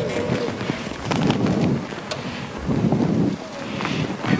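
Muffled indistinct murmuring and shuffling in a theatre hall, with a few light clicks, just before an orchestra begins to play.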